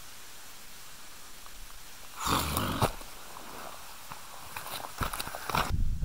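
Handling and rustling noise over a faint steady hiss: a short burst of rustling with a couple of sharp clicks a little over two seconds in, then a low rumble building near the end.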